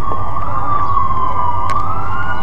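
A siren wailing, its pitch sliding slowly down and then back up, over a low rumble.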